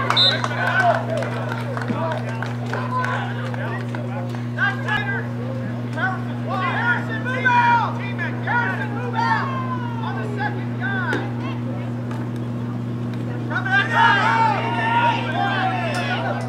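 Several voices of onlookers and people on the sideline talking and calling out at a youth football game, busiest in the middle and near the end, over a steady low hum.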